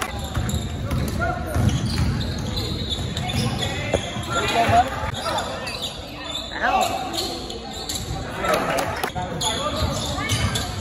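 Basketball bouncing on a hardwood gym floor during a game, with players and spectators calling out now and then, in a large gym.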